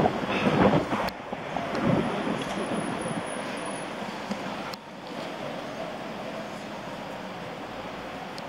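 Wind rushing over a bicycle-mounted camera's microphone as the bike rolls along, with street traffic underneath. A voice is heard briefly in the first second, and there are a couple of short knocks, about a second in and near five seconds.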